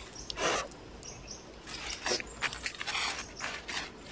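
Dry fallen leaves and twigs rustling as a hand pushes through the leaf litter, in several short bursts, the loudest about half a second in.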